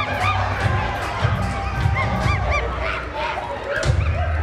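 Short, high hooting calls that rise and fall, like ape or jungle-animal cries, repeat several times over a musical backing track with a steady bass.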